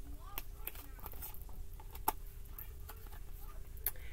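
Tarot cards being handled and laid on a table: a few soft, scattered clicks and snaps over a faint steady room hum.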